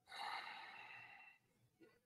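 A man's soft sigh into a microphone: one breath out that starts at once and fades away within about a second and a half.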